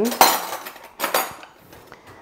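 Metal cutlery clattering as a spoon is fetched from the cutlery: two sharp metallic clinks, one just after the start and another about a second in.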